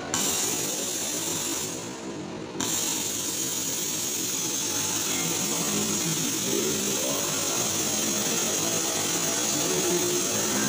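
A push-button MOSFET ball-model exhibit's mechanism running, a steady mechanical noise as plastic balls circulate through its clear acrylic track. The noise dips briefly about two seconds in, then carries on evenly.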